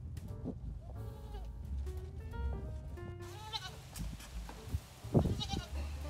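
Goat bleating three times, the last call the loudest, over background music.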